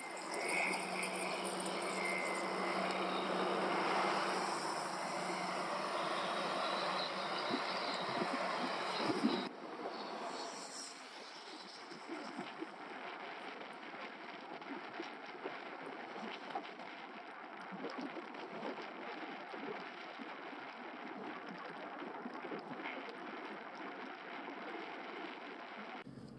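Wind on the microphone of a camera riding on a moving bicycle, with road noise. For the first nine seconds or so it is louder, with a low steady hum underneath. Then it drops suddenly to a quieter, even rush.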